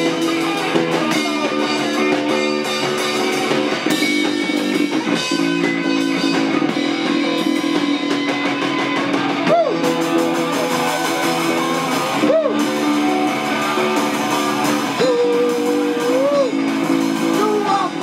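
Live punk rock band playing: electric guitar over a drum kit with cymbals, loud and continuous. A few notes slide up and down in pitch in the second half.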